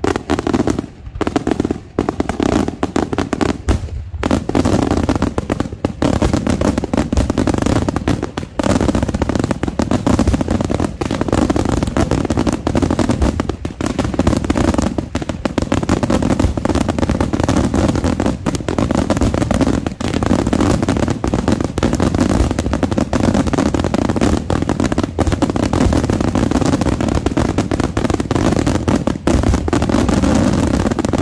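Daytime aerial fireworks: shells bursting overhead in a rapid, dense barrage of bangs and crackle. A few short gaps come in the first four seconds, and after that it runs almost without a break.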